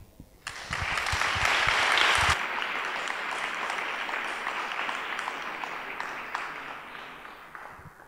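Audience applauding, rising about half a second in, strongest over the first two seconds and then slowly fading, with a few low thumps in the first two seconds.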